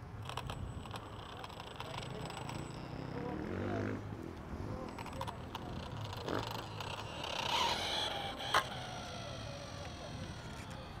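Faint electric motor whine from a converted 1/10 Red Bull RB7 F1 RC car as it pulls away across asphalt, rising in pitch about three to four seconds in. Near the end it swells briefly, and a single sharp click follows.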